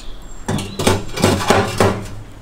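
Heavy cast-iron kazan clanking against the metal stove top as it is set down and shifted into place, about five knocks in quick succession.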